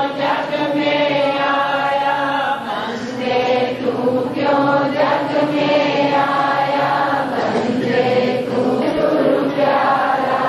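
A congregation of many voices chanting a devotional hymn together, in long held phrases that follow one another without a break.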